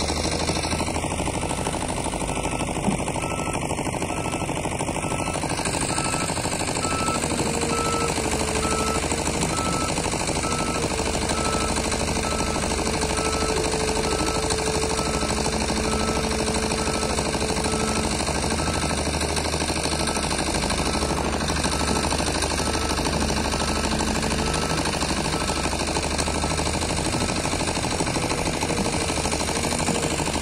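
XCMG XE215C hydraulic excavator's diesel engine running steadily under digging load, a dense continuous clatter. A faint whine rises and fades at times as the boom and bucket work.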